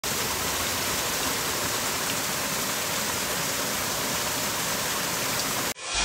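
Stream water pouring through a bamboo-and-net fish trap: a steady, continuous rush that cuts off abruptly just before the end.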